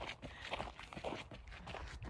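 Footsteps of a person walking outdoors: a series of soft, irregular steps with light rustle from the hand-held phone.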